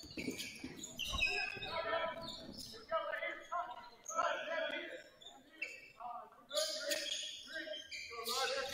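Live basketball game sound in a gymnasium: the ball being dribbled on the hardwood court, with players' and bench voices calling out and echoing in the hall.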